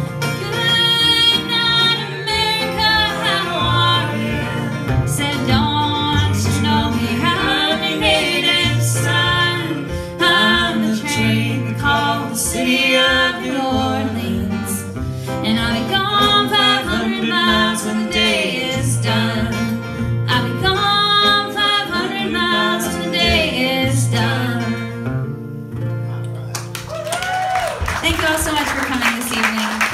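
Live acoustic folk band playing: strummed acoustic guitar and fiddle over a steady bass line, winding down near the end.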